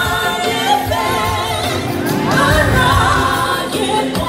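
A large church choir singing a gospel song together.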